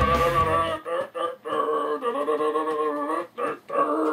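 Rock guitar music cuts off under a second in. A man's voice then sings long, steady held notes in two stretches, with a short break between them.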